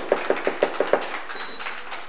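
A quick, even run of about seven sharp hand claps in the first second, about six a second, from the audience, then a lower wash of room noise.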